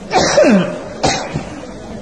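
A person coughing twice. The first cough is drawn out and falls in pitch; the second is shorter and sharper, about a second in.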